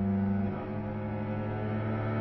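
Solo cello bowing a sustained low note, moving to a new note about half a second in.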